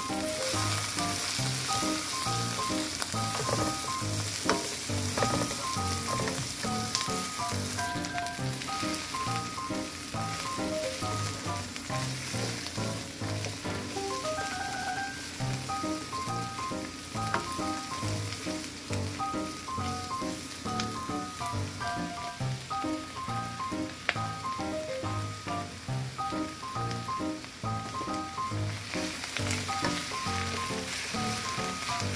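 Vegetables sizzling steadily in a hot nonstick skillet as they are stirred and tossed with a spatula, over background music.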